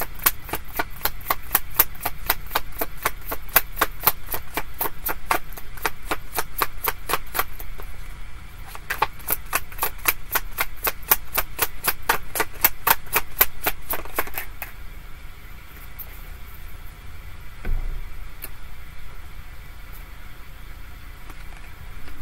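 A tarot deck being shuffled by hand: a rapid run of cards clicking and slapping together, several a second, with a short break about eight seconds in, and stopping about fifteen seconds in. One soft thump follows a few seconds later.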